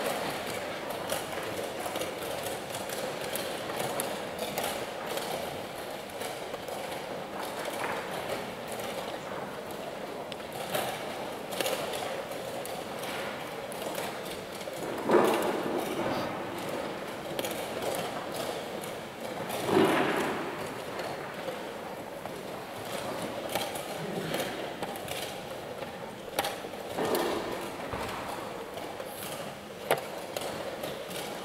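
Tournament hall ambience: a steady murmur of voices with scattered light clicks and knocks of chess pieces and clocks on nearby boards, louder voices swelling twice around the middle. A sharper knock near the end as a piece is set down.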